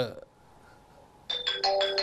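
A short electronic chime melody of flat, stepped notes, like a phone ringtone or doorbell chime, starts about a second and a half in, after a near-quiet pause; a man's spoken word trails off at the very start.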